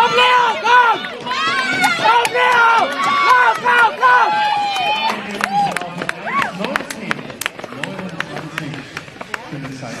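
Loud, high-pitched excited shouting as runners sprint to the finish of a 600 m track race, over crowd noise. After about five seconds the shouting dies down into a lower murmur with scattered sharp clicks.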